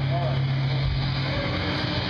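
A steady low hum from the band's stage amplification, which stops about a second and a half in, under faint crowd chatter.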